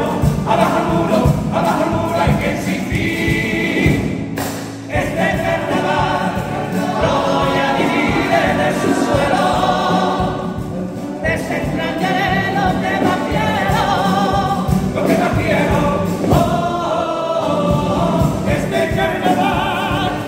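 A carnival comparsa's all-male choir singing a popurrí in harmony to Spanish guitar accompaniment, dipping briefly about four and a half seconds in between phrases.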